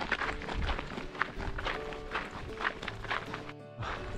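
Footsteps on a gravel track at a walking pace, about two a second, over background music.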